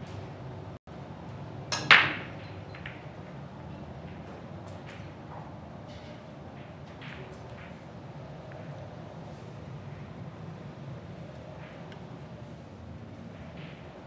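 Heyball (Chinese eight-ball) break shot: a light click of the cue striking the cue ball, then about two seconds in a sharp, loud crack as the cue ball smashes into the racked balls. Scattered fainter clicks follow as the balls collide and hit the cushions.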